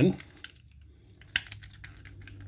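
Plastic parts of a Transformers Kingdom Cyclonus figure clicking as a wing tab is pressed into its slot, with one sharp click a little over a second in and a few fainter clicks after it.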